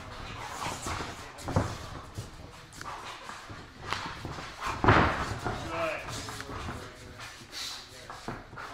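A leather strap swung and slapping in sharp hits, one about a second and a half in and a louder one about five seconds in, amid shuffling on the ring canvas and brief voices.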